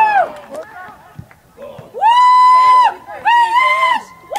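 Loud, high-pitched, drawn-out shouts from a person at a soccer game: one ending just after the start, then two more long calls of about a second each, with short quiet gaps between.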